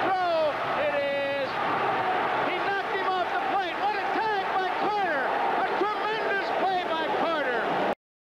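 Speech: a man's TV baseball play-by-play commentary running continuously over steady background noise, cutting off abruptly at the very end.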